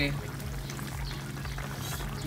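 Fried fish in tomato-and-egg sarciado sauce simmering in a pan: a steady bubbling, liquid hiss with faint small pops, over a low steady hum.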